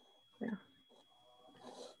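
Quiet moment on a video call: a soft spoken "yeah" about half a second in, then a faint breathy sound near the end, over a thin steady high whine.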